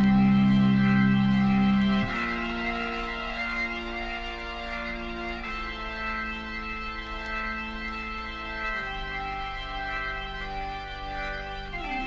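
Recorded 1970s hard-rock track: an organ holding sustained chords that change every few seconds, loudest for the first two seconds, leading into the vocal entry.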